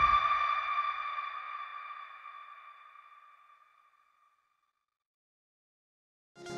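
The ringing tail of a cinematic trailer hit: one clear, high metallic tone with overtones, fading slowly away over about four seconds.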